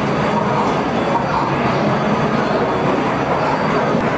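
Arcade din: a loud, steady wash of noise from the game machines and the crowd around them.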